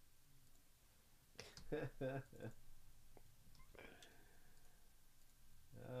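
Near quiet, broken by a brief run of soft breathy voice sounds and clicks about one and a half seconds in, and a faint breath or rustle around four seconds.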